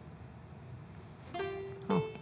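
Soft background music on a plucked string instrument: after a quiet stretch, two single notes, the second higher, near the end.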